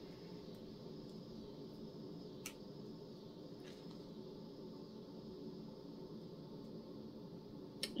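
Quiet room hum with a few faint clicks, about two and a half seconds in, a second later and just before the end, from a thin metal chain necklace and its clasp being fastened at the back of the neck.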